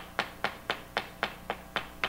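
A steady beat of sharp taps, about four a second, over a faint hum.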